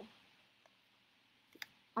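Quiet room with two small clicks: a faint one early and a sharper one about a second and a half in.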